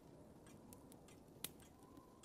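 Near silence: quiet room tone with a few faint, short clicks, the clearest about one and a half seconds in.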